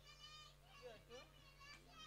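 Near silence: faint, distant children's voices calling and chattering over a steady low hum.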